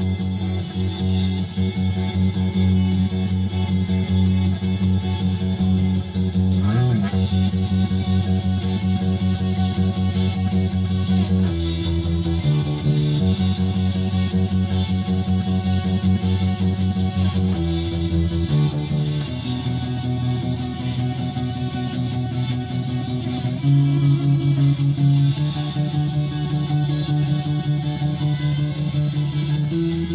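Electric bass guitar played along with a rock song led by electric guitars: held notes and chords that change every few seconds, with one note bending in pitch about seven seconds in.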